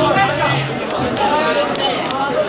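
Several people talking over one another in a hall, a babble of overlapping voices with no music playing.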